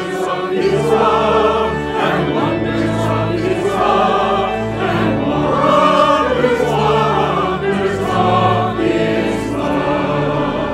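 A mixed choir of men's, women's and children's voices singing a hymn together, in phrases that swell and change pitch every second or so over held low notes.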